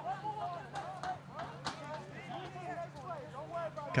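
Field sound at a football game: distant voices of players and people on the sideline calling and chatting, with a steady low hum and a couple of sharp claps or knocks.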